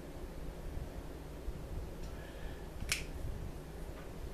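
Low steady room hum with a single sharp click about three seconds in.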